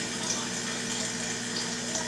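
Air pump running with a steady hum, together with a continuous rush of water from a Dewey Mister spraying and dripping nutrient solution inside a closed hydroponic bucket.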